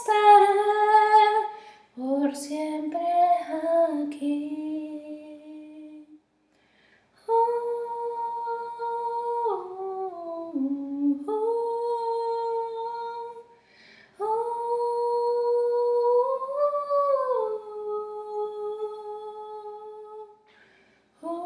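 A woman's voice, unaccompanied, holds the end of a sung note and then hums a slow melody in long held notes that step and slide down in pitch. The phrases are separated by short silences.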